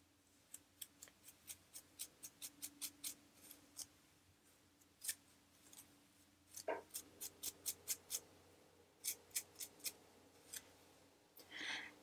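Fine-tooth plastic comb scratching across a dry, flaky scalp in quick short strokes, about three or four a second, coming in runs with brief pauses between them.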